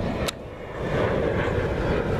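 A sharp click, then wind rushing over a handheld camera's microphone, swelling about a second in and holding steady.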